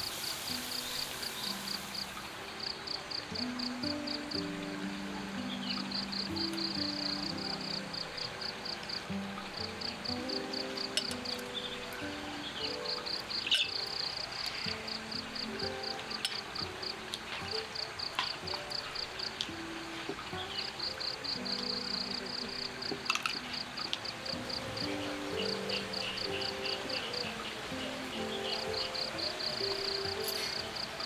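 Crickets chirping in trains of rapid pulses that stop and start, over soft background music of slow, held low notes. A few sharp clicks stand out.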